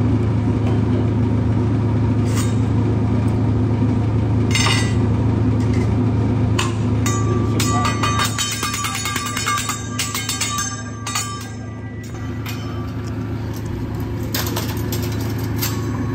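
Steady low hum of restaurant ambience, with a quick run of clinks of utensils on dishes about halfway through.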